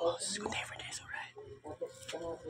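Soft speech and whispering.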